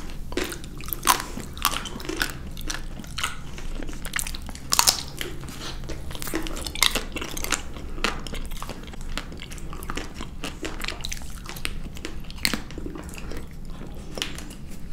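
Close-miked eating of Magnum ice cream bars: the chocolate shell cracks in many sharp, irregular crackles, with chewing and wet mouth sounds in between.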